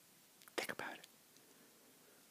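A man's brief whisper close to the microphone, a short breathy burst about half a second in.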